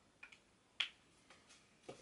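A few faint, short clicks and taps, the sharpest about a second in, from dry-erase markers and small whiteboards being handled.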